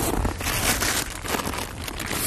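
Rustling and crinkling of nylon fabric and stuff sacks being handled and pushed into a dog sled's gear bag, with irregular crackles.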